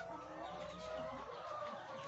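Laying hens clucking and calling faintly in the background, with several drawn-out, overlapping calls.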